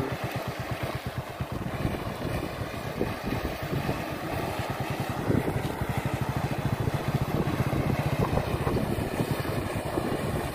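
Small motorcycle engine running steadily at low speed, with a rapid, even low pulsing.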